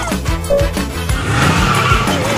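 Upbeat cartoon music with a car speeding away, its tyres squealing, growing louder in the second half.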